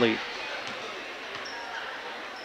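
Steady murmur and room noise of a crowd in a school gymnasium, with no clear ball bounces.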